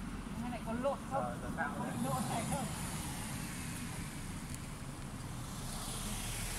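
Indistinct, fairly faint talking by a few people during the first half, over a steady low outdoor rumble.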